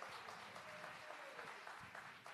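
Faint applause from an audience.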